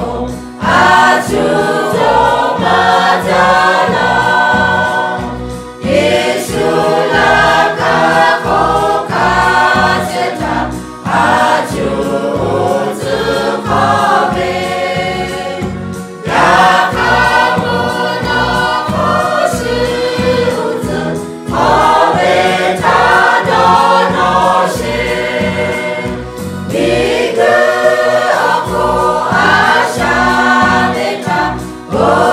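A mixed choir of women and men singing together from song sheets, in phrases of about five seconds with short breath pauses between them.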